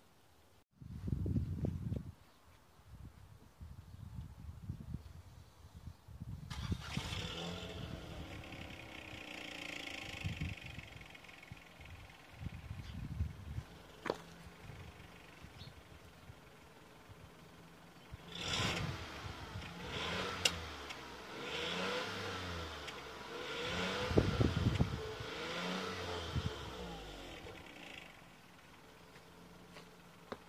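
Citroën DS3's three-cylinder petrol engine running, heard from behind the car, with its pitch rising and falling several times in the second half. It is being run after an oil and filter change so the new oil filter fills up and any leaks show.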